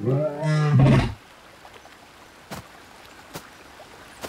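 Cartoon tyrannosaur giving one low, rumbling growl about a second long at the start, followed by quiet with a couple of faint clicks.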